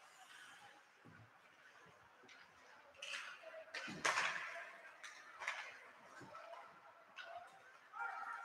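Faint ice hockey play in an echoing rink: a few scattered knocks and scrapes of sticks, puck and skates on the ice, the loudest about four seconds in, after a nearly quiet start.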